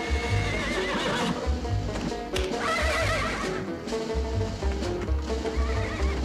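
A horse neighing three times, near the start, about halfway through and near the end, over dramatic film-score music with a pulsing low bass.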